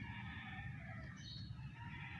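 Faint bird calls in the background, thin wavering chirps over a low steady hum.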